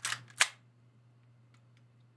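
Two sharp clicks from a handgun being handled, about half a second apart, the second louder.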